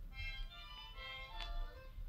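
A child blowing a harmonica: several notes held together at once, changing about halfway through, faint. It is heard as horrible music, sounding 'like 13 cats having their tails trodden on'.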